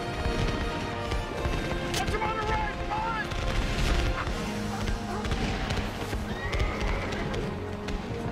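Horses whinnying a few times, shrill wavering calls about two seconds in and again near the end, over dense low battle rumble and film music.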